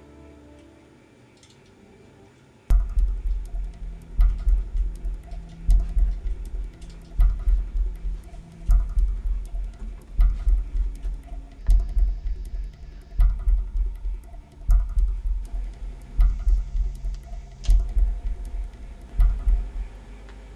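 Background film score: a quiet sustained passage fades away, then about three seconds in a heavy, pulsing bass-drum beat comes in, hitting about once every second and a half, with faint high ticks over it.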